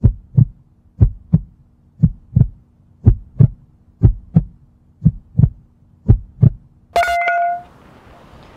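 Heartbeat sound effect: seven double thumps (lub-dub), about one a second, over a low steady hum. Near the end a single sharp ringing hit cuts in and lasts about half a second.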